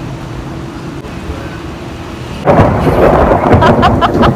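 Dust-storm wind: a steady low rush, then about two and a half seconds in a strong gust hits the phone's microphone with loud, rough buffeting.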